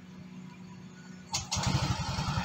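Yamaha Mio Gear scooter's 125 cc single-cylinder engine being cold-started: after a quiet second, a click, then the engine catches about a second and a half in and runs with a rapid, even pulse.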